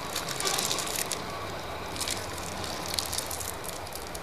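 Irregular crackling and clicking over a steady hiss and low mains-like hum, the surface noise of an old film soundtrack.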